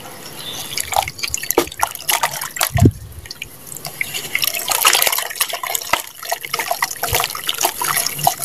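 Wet sand squeezed and crumbled by hand in a tub of muddy water: squelching, dripping and splashing, with a dull plop a little under three seconds in.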